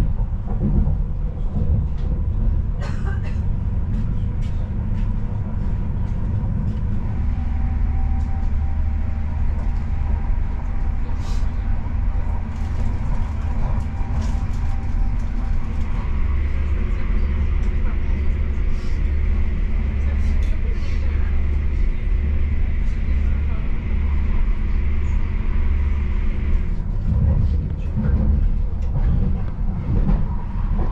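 Electric passenger train running, heard from inside the carriage: a steady low rumble of the wheels and running gear with scattered light clicks. A steady high whine grows stronger from about the middle and cuts off a few seconds before the end.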